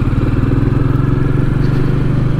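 Royal Enfield Meteor 350's single-cylinder engine running steadily at low speed under way.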